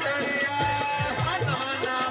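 Live Punjabi folk music played on tabla and harmonium: a steady drum rhythm whose deep strokes slide down in pitch, under a harmonium melody.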